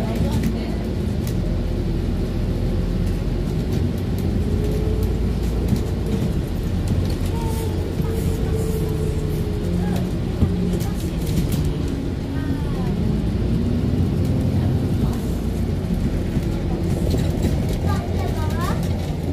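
Alexander Dennis Enviro400 diesel double-decker bus heard from inside the lower deck while under way: a steady engine drone whose note rises and falls a little about two-thirds of the way through.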